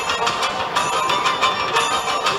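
Background music with quick, repeated bell-like notes ringing over a steady bed.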